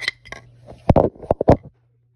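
Hard plastic toy dollhouse furniture clattering as it is handled: several sharp knocks and clicks in quick succession, then the sound cuts off suddenly.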